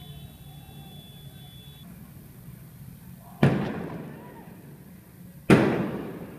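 Two loud firework bangs about two seconds apart, each echoing and dying away.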